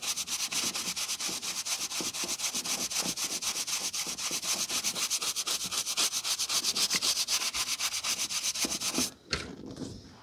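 A stiff-bristled, wooden-backed brush scrubbing dust off a paperback's page edges in quick, regular strokes, about six a second, bristles rasping on paper. The brushing stops about nine seconds in, followed by a couple of light knocks.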